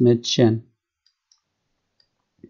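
A man's voice says 'das Mädchen' at the start, then two faint computer mouse clicks a little after one second, close together.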